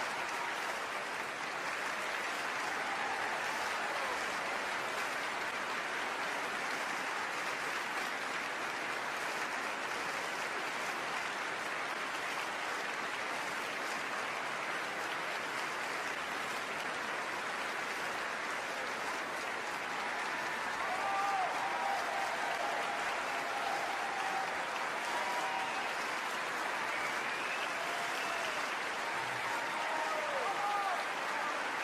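Sustained audience applause, a dense, even clapping that holds steady throughout. Faint voices or calls rise over it in the last third.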